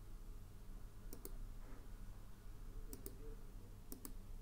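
Computer mouse button clicks: three quick pairs of clicks spread through a few seconds, over a faint steady low hum.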